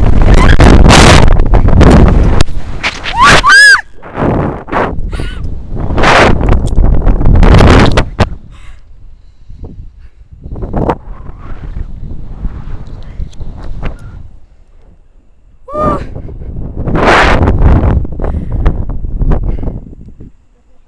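Heavy wind rushing over a body-mounted camera's microphone as a rope jumper free-falls and then swings on the rope, loudest in the first eight seconds and surging again about four seconds before the end. Short high screams cut through about three and a half seconds in and again around sixteen seconds.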